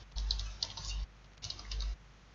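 Typing on a computer keyboard: two quick runs of keystrokes, the first lasting nearly a second and the second about half a second.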